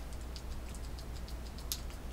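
Faint, irregular small clicks from fingers working a perfume bottle's spray pump, which has not yet begun to spray, over a low steady hum.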